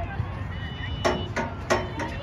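Players and spectators calling out across an outdoor soccer field during play, with two sharp knocks, about a second in and near the end, over a steady low background rumble.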